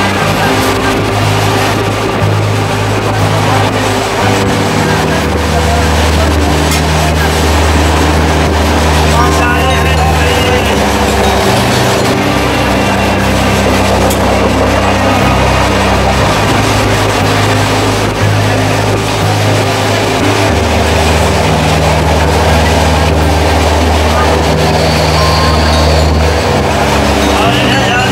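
Steady running noise of a moving train, heard from a carriage window, with voices and music mixed over it. Low sustained notes shift in steps every few seconds.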